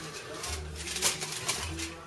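Aluminium foil rustling and crinkling faintly as it is picked up and handled, with a few small clicks.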